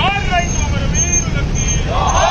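A group of men shouting slogans together in long, pitched calls. One call falls away within the first half second, and quieter voices follow. A steady low rumble of road traffic runs beneath, and a faint high beep repeats about twice a second.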